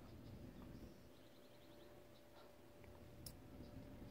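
Near silence, with a few faint clicks, one sharper click about three seconds in, and a brief faint rapid ticking a little over a second in.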